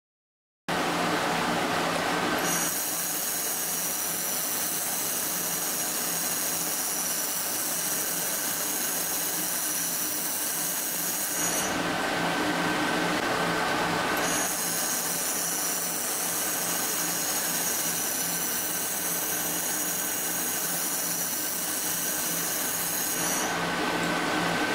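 Air-cooled laser welding machine running, a steady hum and hiss that starts under a second in. A high, wavering whine comes in on top of it twice, for about nine seconds each time, with a short break between.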